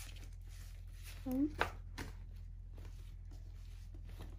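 Soft rustling and clicks of a fabric pouch and a mesh beach bag being handled, with a brief vocal sound and a sharp click about a second and a half in. A steady low hum runs underneath.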